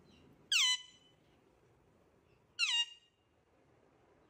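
Alexandrine parakeet giving two loud, short calls about two seconds apart, each sliding down in pitch.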